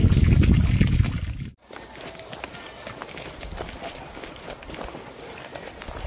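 Water running into a fish pond, heard as a loud low rumble that cuts off suddenly about a second and a half in. After that comes quieter outdoor background with a steady patter of footsteps walking along a path.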